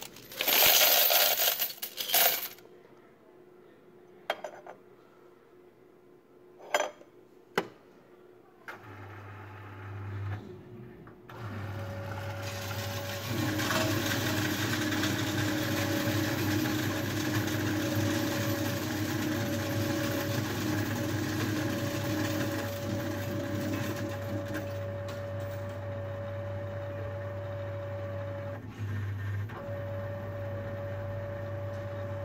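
Coins poured from a glass jar clatter into the steel tray of a coin-counting machine for the first couple of seconds, followed by a few single clicks. About nine seconds in, the machine's motor starts with a low hum. From about twelve seconds it runs steadily, humming with a steady tone, as it sorts and counts the coins.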